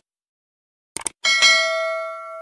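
Subscribe-animation sound effects: a quick double mouse click at the start and again about a second in, then a notification bell dings twice in quick succession and rings on, fading slowly.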